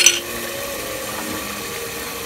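Mutton frying in oil in an aluminium pressure cooker, a steady sizzle, opened by one sharp tap of the spatula against the pot right at the start.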